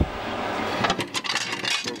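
Glass bottles clinking against each other and the fridge's wire shelf as a bottle is taken out, with several sharp clinks in the second half over a rustle of handling.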